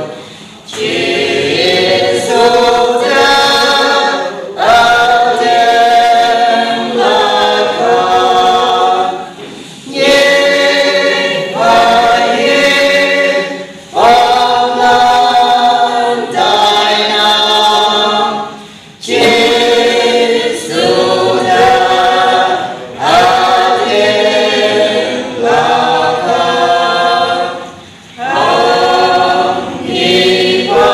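A small mixed choir of women and men singing a Konyak gospel hymn a cappella, in phrases of several seconds with brief breaks between them.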